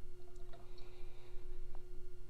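A few faint clicks of a steel bolt being turned by hand into the pump's motor flange, over a steady low hum.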